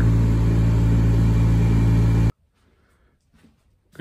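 Pickup truck driving, heard from inside the cab: a steady engine and road drone that cuts off abruptly a little over two seconds in, followed by near silence.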